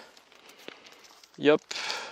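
A flexible shower hose being coiled by hand: faint rustling and light scattered knocks as it is looped, then a louder rustle near the end. A man says a short "hop" about one and a half seconds in.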